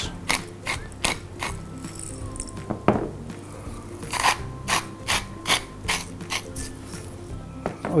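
Hand-twisted salt and pepper mills grinding seasoning into a bowl: a run of short ratcheting grinding clicks, about two or three a second, over soft background music.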